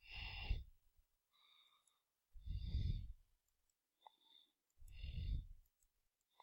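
A man breathing out three times into a close microphone, each breath under a second long and about two and a half seconds apart, with a faint click in between.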